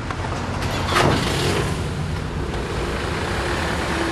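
A vehicle's engine running steadily, with a door slamming shut about a second in.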